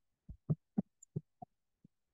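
Computer keyboard being typed on: about seven short, muffled keystrokes over a second and a half, a word typed and entered.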